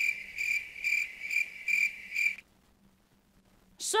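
Crickets-chirping sound effect, a regular chirp about twice a second, used as the comic cue for an awkward, speechless silence. It cuts off suddenly about two and a half seconds in, leaving dead silence.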